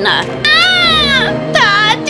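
A young girl's voice crying out "Daddy!" in two long, high wailing cries that fall in pitch, sobbing, over soft background music.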